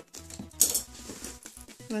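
Scissors cutting through brown packing tape on a cardboard shoebox, with one sharp snip about half a second in followed by lighter rustling of tape and cardboard.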